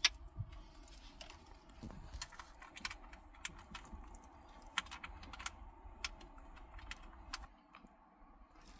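Irregular light clicks and taps of cable plugs, loose wires and plastic being handled and pushed into the connectors on the back of an Android car stereo head unit.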